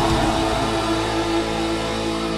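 Live folk metal band holding a sustained, ringing chord while the drums drop out. The tones stay steady, with no beat.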